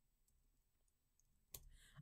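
Near silence with faint computer keyboard key clicks as a short terminal command is typed and entered, and a short breath near the end.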